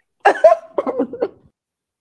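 A person laughing: a sharp first outburst, then a few quick short ha's that stop about a second and a half in.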